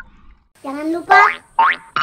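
Cartoon sound effects from an animated subscribe-button outro: two springy, rising 'boing' pitch glides. The first starts about half a second in, and a shorter one follows near the end.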